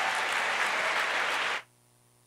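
Audience applauding, a dense steady clapping that cuts off abruptly about a second and a half in, leaving near silence.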